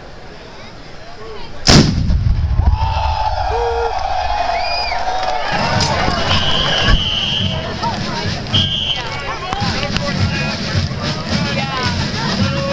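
A field cannon fires a single blank shot about two seconds in, a sharp boom with a rumbling tail, followed by steady crowd noise with shouts and whoops.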